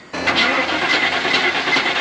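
A Range Rover's freshly rebuilt 4.6-litre V8 turning over on the starter motor, with an even chug about five times a second; the engine has no oil pressure.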